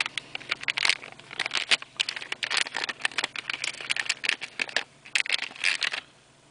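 Metallised anti-static plastic bag crinkling in the hands, irregular crackles as a circuit board is slid out of it.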